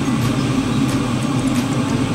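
Steady low rumble and hiss from the stove while a lidded pot of arroz caldo cooks, unbroken and even in level.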